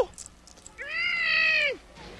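A single high-pitched, wordless call about a second long, its pitch rising a little and then dropping away at the end.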